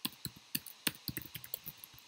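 Typing on a computer keyboard: an uneven run of about a dozen key clicks.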